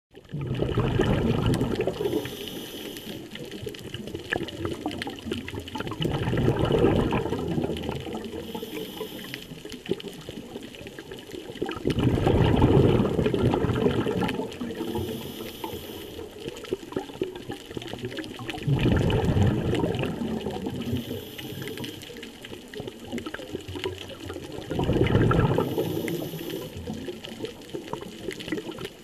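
A scuba diver breathing through a regulator, heard underwater: a burst of bubbling exhaust on each exhale and a short hiss on each inhale, about one breath every six seconds, five breaths in all.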